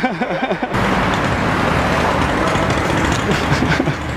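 Busy street background noise: a steady rumble of traffic with a low hum and faint voices. It comes in abruptly under a voice that ends less than a second in.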